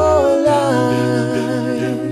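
All-male a cappella group singing sustained chords with no instruments. The bass voice steps up to a higher note about half a second in.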